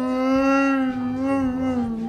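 Chewbacca's Wookiee howl: one long held call that dips slightly in pitch near the end.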